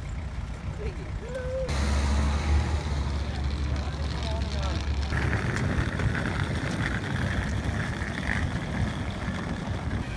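Low, steady rumble of a vehicle engine running close by, with outdoor street noise and faint voices. The rumble comes in suddenly a couple of seconds in.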